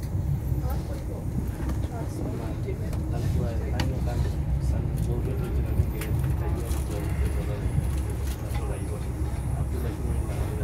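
Inside a coach of a High Speed Train hauled by Class 43 power cars, running at speed: a steady low rumble of wheels on rail with scattered sharp clicks.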